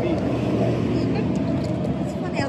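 Motor vehicle engine running on the adjacent road, a steady low rumble.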